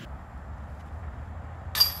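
A disc golf putt striking the chains of a metal basket near the end: a sudden, brief metallic jingle of chains as the disc goes in.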